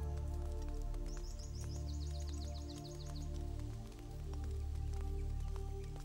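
Slow background score with held notes over a deep sustained bass. About a second in, a bird gives a rapid run of short, high, downward-sweeping chirps that lasts about two seconds.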